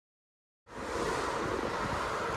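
Silence, then about two-thirds of a second in, wind buffeting the microphone starts abruptly and runs on steadily, mixed with the rush of a choppy sea below a ship's open deck.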